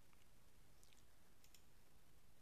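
Near silence: faint room tone with a few soft, short clicks.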